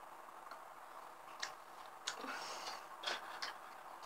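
A handful of light, irregular clicks and taps from a makeup palette and eyeshadow brush being handled, over faint room noise.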